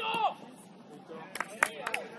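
A player's shout cut off just after the start, then three sharp knocks in quick succession about a second and a half in, typical of a football being kicked, over low voices.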